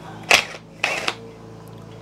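Cordless impact wrench firing in two short bursts, about a third of a second and about a second in, as it undoes a bolt on a Reliant 600cc aluminium engine block.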